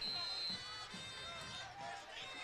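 Faint stadium ambience: music and crowd murmur in the background, with no close sound standing out.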